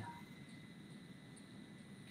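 Near silence: faint steady hiss of room tone in a pause between speech.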